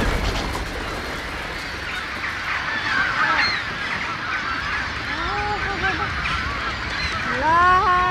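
A large flock of birds calling, with many short overlapping squawks that thicken from about three seconds in. Longer honking calls come through around five seconds and again near the end.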